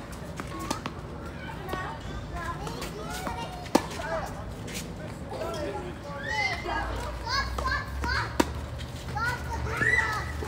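Tennis racket strings striking the ball during a doubles rally: several sharp pops, the loudest about four and eight seconds in, over a steady background of children's voices.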